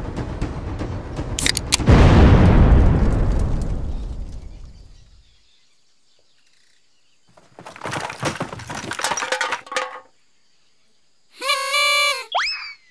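Music with a steady beat breaks off into a sudden loud crash, a shattering boom that fades away over about three seconds. After a near-silent gap come scattered clattering sounds, and a short pitched tone starts just before the end.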